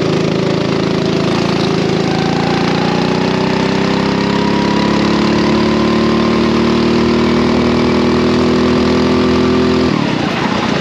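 Racing kart engine accelerating hard, its pitch climbing steadily for several seconds, then the revs falling off suddenly at the very end as the throttle is lifted.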